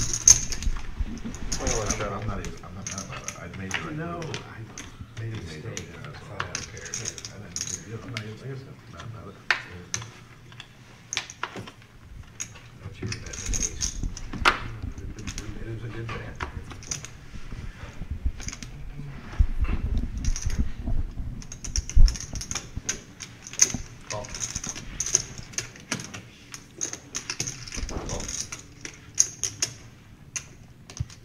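Clay poker chips clicking and clacking as players riffle and stack them on the table, many quick sharp clicks throughout, with low chatter from the players.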